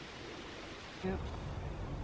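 Faint steady background noise with no clear source, joined about a second in by a low rumble, and a quiet spoken 'yep'.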